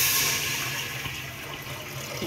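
Stream of water pouring and splashing into an empty metal pressure cooker, loudest at first and growing gradually quieter as water collects in the pot.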